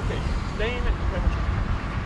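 Steady low rumble of highway roadside noise, from traffic and vehicles near the road. A quiet voice comes in briefly about half a second in.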